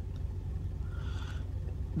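Low steady rumble of a car engine idling, heard from inside the car's cabin.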